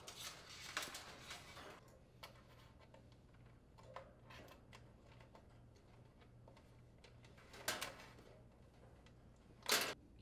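Faint rustling and light clicks of electrical wires being handled and fed through a sheet-metal control box, busiest in the first two seconds, with a short louder rustle near the end, over a faint low hum.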